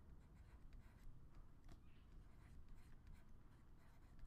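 Near silence with faint stylus scratching and small taps as a word is handwritten on a digital drawing surface.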